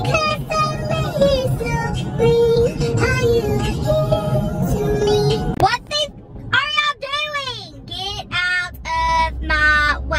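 Music playing with a singing voice over it; about six seconds in the backing music stops and a lone woman's singing voice is left, sliding up and down in long drawn-out notes.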